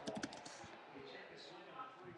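Typing on a computer keyboard: a quick run of keystroke clicks in the first half-second, then a few fainter taps, as a search is typed in.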